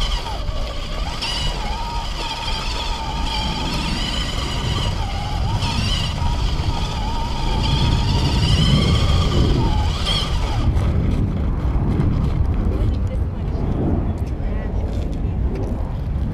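Electric dirt bike riding on a dirt track: a thin motor whine wavering up and down with speed over a steady rumble of wind buffeting and tyres on the dirt. The whine stops about ten seconds in while the rumble goes on.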